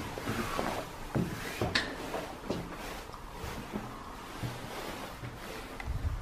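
Footsteps on bare wooden stair treads, heard as irregular knocks and thuds as someone climbs an old staircase.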